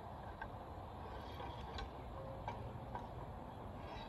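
A few faint, irregular ticks and clinks from the gun crew working the bore of a 4-pounder field gun with its searcher (worm) after firing, over a low, steady outdoor background.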